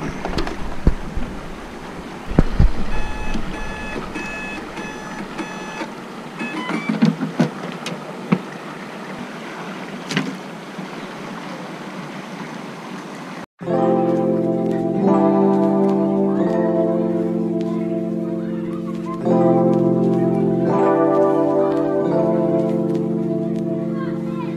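Flowing creek water and low handling bumps, with a run of short electronic beeps a few seconds in as the RC jet boat's battery is plugged in and its speed controller arms. About two-thirds through, the sound cuts abruptly to music with sustained chords.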